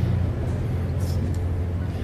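A steady low hum of background noise with no speech: a constant rumble at the bottom of the range.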